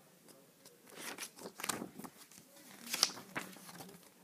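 Pages of a book being handled and turned: several short papery rustles, the loudest about three seconds in.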